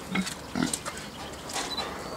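Domestic fattening pigs grunting: two short low grunts in the first second, with scattered light clicks and knocks around them.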